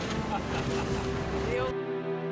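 Wind buffeting the microphone and sea noise aboard a moving boat, mixed with voices and a music track underneath. About 1.7 s in, the live sound cuts off abruptly and only the music is left.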